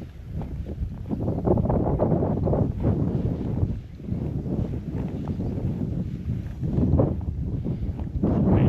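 Wind buffeting the microphone, an uneven low rumble that swells about a second in and rises and falls in gusts.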